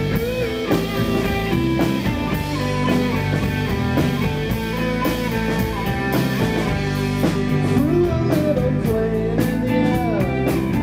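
Indie rock band playing live with electric guitars, electric bass and drum kit in an instrumental passage, with guitar notes that bend in pitch.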